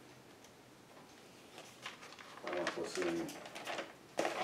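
Quiet room tone, then a person's voice speaking low and halting from about two and a half seconds in.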